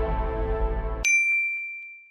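Background music that cuts off suddenly about a second in, replaced by a single high, bell-like ding that rings out and fades away.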